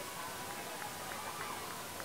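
Faint open-air ambience of an athletics stadium during a race: a steady hiss with faint, short high-pitched sounds scattered through it.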